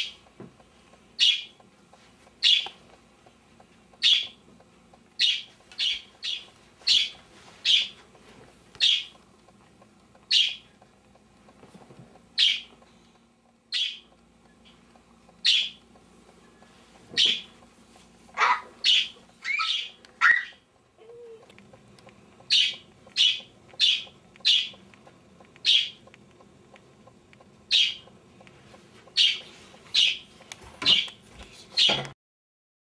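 A pet bird chirping loudly and insistently, a sharp high call roughly once a second, with a few longer falling calls past the middle.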